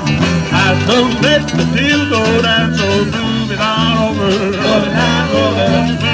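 Live band playing an upbeat song on guitars, accordion, saxophone and drums, with a steady beat and a melody line moving over it.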